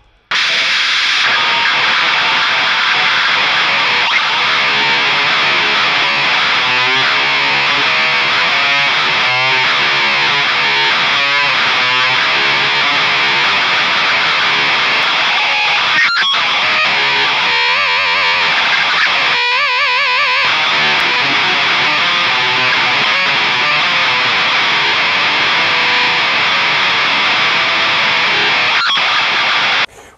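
Electric guitar played through seventeen distortion and overdrive blocks chained in series on a Line 6 Helix. The result is a dense, heavily saturated wall of fuzz and hiss at a steady loud level. Picked notes and chords barely stand out from it. It starts abruptly and cuts off suddenly at the end.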